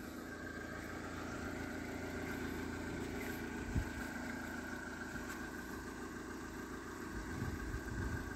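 2000 Mazda Demio's 1.3-litre engine idling steadily, with one brief knock about four seconds in.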